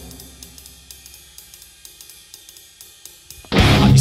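A quiet break in a nu-metal song: a drum kit's hi-hat ticking alone at a quick, steady pace, about five ticks a second. About three and a half seconds in, the full band with heavy distorted electric guitars comes back in loud.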